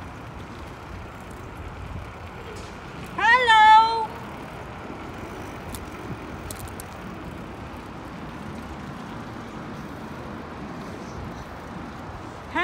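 Steady noise of moving across bumpy outdoor pavement, with one short high-pitched call about three seconds in that rises and then holds.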